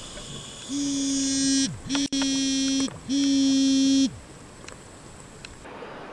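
Buddy-Watcher underwater signalling device sounding its buddy-call alert, heard underwater: three buzzes of about a second each, each dropping in pitch as it cuts off. This is the call set off by pressing the large call button.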